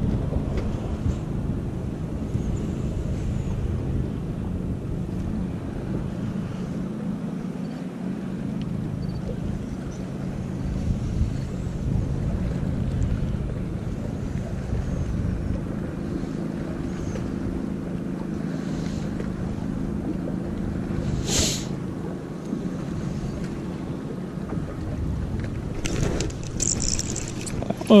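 A steady low motor hum with wind rumbling on the microphone. There is one short sharp click about three-quarters of the way through.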